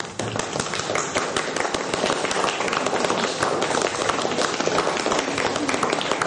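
Audience applause: many people clapping steadily in a dense, even patter.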